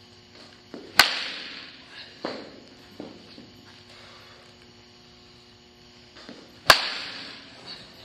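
Baseball bat striking a ball twice, about five and a half seconds apart, each a sharp crack that rings briefly in the cage. Each crack is followed a second or so later by softer knocks as the ball lands. A faint steady hum runs underneath.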